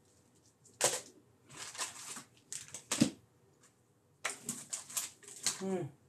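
Scattered clicks and rustles of small objects being handled on a tabletop, in short clusters, with a brief voice-like sound near the end.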